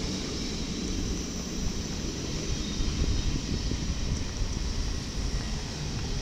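NS ICMm (Koploper) intercity electric multiple unit rolling past on the adjacent track as it comes into the station: a steady rumble of wheels on rail.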